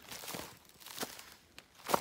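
Footsteps on dry leaves and wood-chip mulch: a crunching step shortly after the start, then two sharp clicks about a second apart, the second the loudest.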